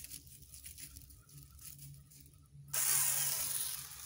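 Handheld mini chainsaw triggered once near the end, its motor and chain starting suddenly and winding down within about a second. The chain has not been tightened.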